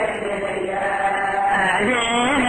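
A man's voice chanting an Arabic religious lament (latmiya) in long melodic lines, rising in pitch near the end. The recording is old and narrow-band, with the top end cut off.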